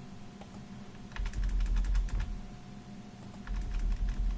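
Computer keyboard typing: a quick run of keystrokes a little after a second in, and another short run near the end.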